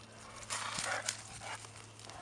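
Two dogs, a boxer and a larger dog, play-fighting on gravel. There is a rough, noisy burst of scuffling and breathy dog sound about half a second in, which fades by the end of the first second.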